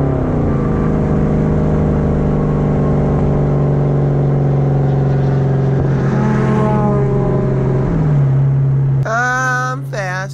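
Car engine and exhaust running at a steady pitch, which drops about half a second in and briefly rises around six seconds in.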